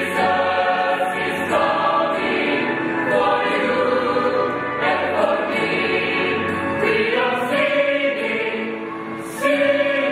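Mixed choir of women and men singing together in parts, with long held notes. The sound softens briefly near the end, then the choir comes back in more strongly.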